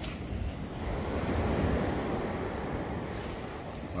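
Sea surf breaking and washing up the beach, a steady rush that swells about a second in and eases toward the end, with wind buffeting the microphone.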